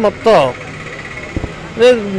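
A man speaking Odia, his phrase ending in a falling pitch about half a second in. A pause of about a second with only steady background noise follows before he resumes speaking near the end.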